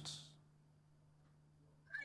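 Near silence, with only a faint steady low hum.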